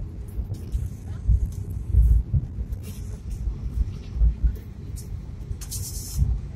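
Suzuki Swift hatchback driving on a paved road, heard from inside the cabin: an uneven low rumble of road and engine noise that swells a few times, with a few faint clicks.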